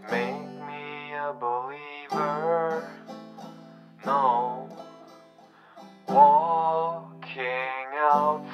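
A song with a voice singing over plucked guitar, in four sung phrases with short gaps between them.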